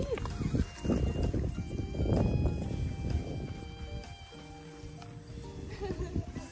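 Light background music with steady held notes, over irregular low thuds and rustling in the first three seconds or so, the sound of running on dry grass close to the microphone.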